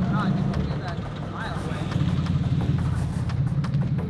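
Mercury Mountaineer SUV's engine running loudly as it drives up and pulls into a parking space, a deep steady rumble: loud enough to hear from a mile away. The engine is so tired that it is expected to stall if the car stops.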